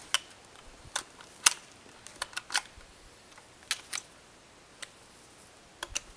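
Lever-action rifle being handled at its receiver: a string of about ten sharp metallic clicks, irregularly spaced, some in quick pairs.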